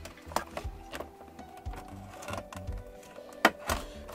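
Sharp clicks and crackles of a clear plastic blister pack as a small knife cuts it free of its card, with a pair of louder clicks near the end, over quiet background music.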